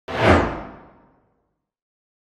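A whoosh sound effect accompanying an animated logo: one sudden swish that starts right away, slides down in pitch and fades out within about a second.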